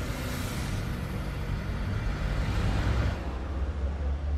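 Road traffic noise: a steady low rumble with a rushing hiss, as of a passing car, that fades away over about three seconds.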